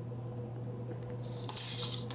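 A washi tape strip being peeled from its backing and pressed onto a paper planner page: a brief papery rustle with a couple of small clicks about a second and a half in.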